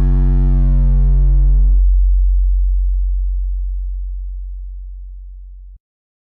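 Final held note of a Brazilian funk beat: one long, deep synth bass note whose upper overtones die away after about two seconds while the low tone fades slowly, then cuts off suddenly near the end.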